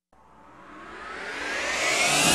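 A transition whoosh sound effect: starting from silence, it swells steadily louder and climbs in pitch as it builds.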